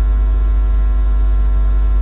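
Loud, steady electrical mains hum with a buzzy ladder of overtones, sitting under a man's recorded speech feed during a pause in his words.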